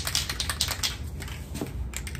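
Aerosol spray-paint can being shaken, its mixing ball rattling in a quick run of clicks that thin out after about a second.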